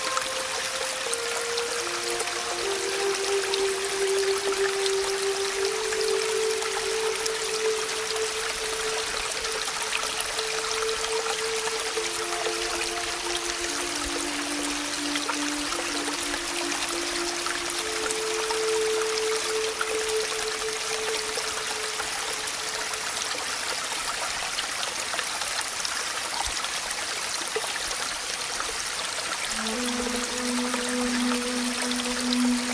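Slow, calm background music of long held notes that change every few seconds, over a steady sound of falling rain with scattered drop ticks.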